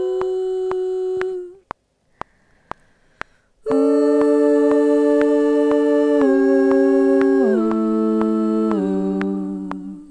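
A woman humming a harmony line in long held notes: one note until about a second and a half in, then after a short pause a long note that steps down in pitch three times and fades out near the end. Faint clicks tick steadily about twice a second throughout.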